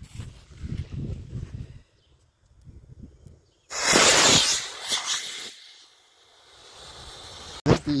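D12 model rocket motor igniting with a sudden loud hiss about three and a half seconds in, burning for about a second and a half before fading out as the rocket plane launches off its ramp.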